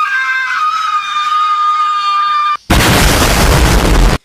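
A person's long, loud scream held on one high pitch for about two and a half seconds. It breaks off, and a very loud explosion follows, lasting about a second and a half.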